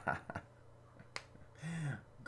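A quiet pause broken by one sharp click about a second in, with a short low hum from a man's voice near the end.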